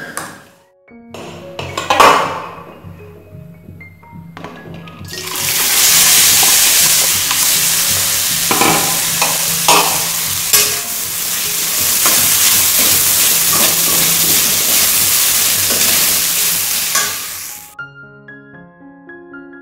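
Flattened rice sizzling in a hot aluminium wok while a steel spoon stirs it, with frequent scrapes of the spoon on the pan. The sizzling starts about five seconds in and cuts off just before the end. Before it there is soft background music and a single knock.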